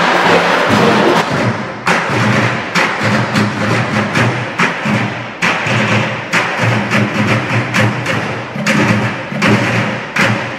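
Dance music for about the first two seconds, then a percussion ensemble beating improvised drums with sticks, including large plastic water jugs: a run of loud, uneven struck beats with deep thuds and ringing between them.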